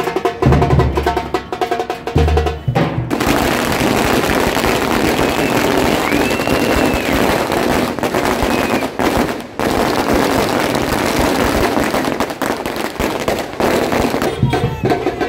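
A street drum troupe is beating loud, pulsing strokes on hand-carried drums. About three seconds in, a long string of firecrackers takes over with a dense, rapid crackle of bangs that runs on for the rest of the time.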